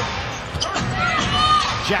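A basketball being dribbled on a hardwood arena court, with arena crowd noise and voices underneath.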